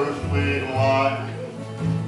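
Acoustic guitar and upright double bass playing a country song together, the bass plucking a line of low notes under the guitar.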